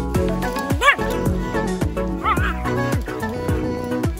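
Two short dog barks over background music while dogs play-wrestle: a loud yip about a second in and a shorter, wavering one just past two seconds.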